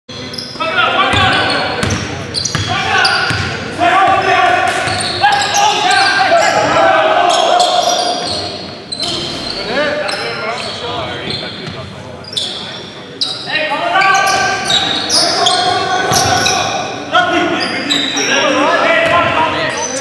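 Basketball game in a gym: players' voices calling out and a basketball bouncing on the hardwood court, with short impact sounds scattered throughout, in the echo of a large hall.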